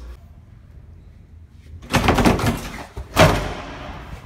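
Banging on a classroom door: a quick run of hard knocks about two seconds in, then one loud bang a second later.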